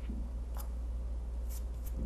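A fabric-shading applicator rubbing and tapping lightly on a cotton dish towel, a few faint soft ticks over a steady low hum.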